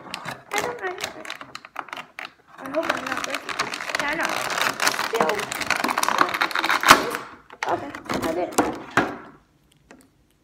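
Stiff clear plastic blister packaging crinkling and crackling as it is bent, twisted and pulled apart by hand to free a toy figure, with a sharp loud crack about seven seconds in.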